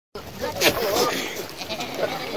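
Goats bleating in a herd, with one wavering bleat in the first second.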